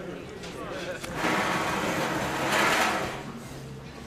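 Indistinct background voices, with a swell of rushing noise that rises about a second in, peaks and fades away after about two seconds.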